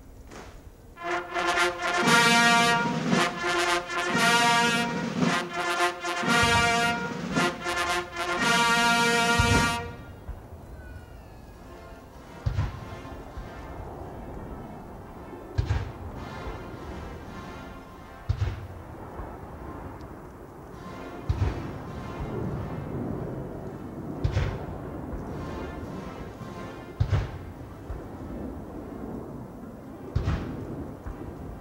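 A military band plays a national anthem, loud brass chords for the first several seconds and then softer. From about twelve seconds in, a cannon booms about every three seconds: the guns of a 21-gun salute firing through the anthem.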